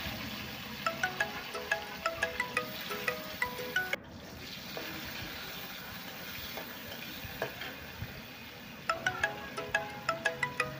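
Tomato pieces frying in hot oil in a kadai, a steady sizzle, under a tinkling chime-like background tune that plays for the first few seconds and returns near the end.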